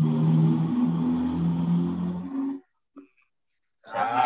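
A low voice chanting a slow devotional chant in long held notes, heard over a video call. A little past halfway it cuts off abruptly into about a second of dead silence, and the chant comes back just before the end.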